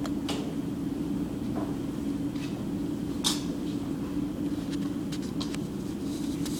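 Steady, low fan hum in the room, with a few light clicks and knocks as a plastic drafting triangle is shifted and set down on paper. The sharpest click comes about three seconds in, followed by a short run of quick ticks near the end.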